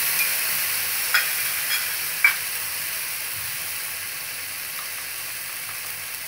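Chopped onions sizzling in hot olive oil in a frying pan, with tomato pulp just added; the sizzle fades slowly. A few sharp clicks of a metal spatula against the pan come in the first couple of seconds.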